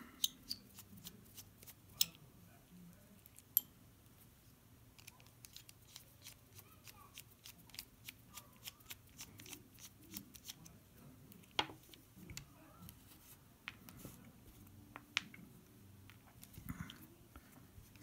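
Faint, small clicks and light scraping of a precision Phillips screwdriver turning a screw out of a metal lock cylinder, with a few sharper metal clicks along the way.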